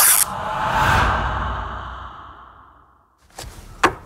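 Silky cloth handled right against a microphone. It starts with a sharp rustle, then a long swishing noise that swells and fades away over about three seconds. A few light clicks follow near the end.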